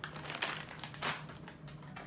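Rustling and crinkling of items being handled, with sharper rustles about half a second and a second in.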